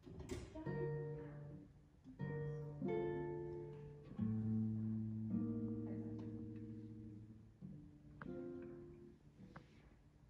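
Classical nylon-string guitar playing a slow passage of plucked chords. Each chord is left to ring and fade for one to two seconds before the next is struck.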